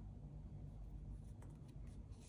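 Faint rustling of acrylic and cotton yarn and crochet fabric as a yarn needle is worked through to sew a side seam, with a few soft ticks in the last half second over low room hum.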